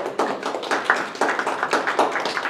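A small group of people applauding, with many quick, overlapping hand claps.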